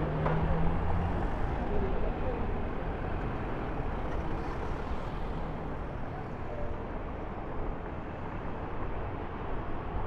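Slow-moving city street traffic: a low engine hum is strongest in the first second or two, then settles into steady traffic noise.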